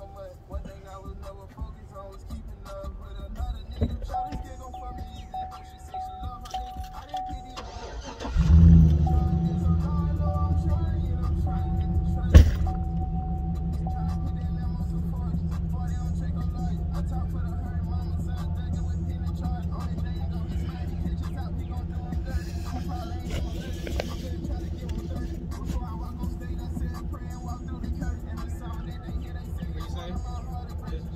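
A car engine starts about eight seconds in and then idles steadily. A single sharp knock comes a few seconds after it starts.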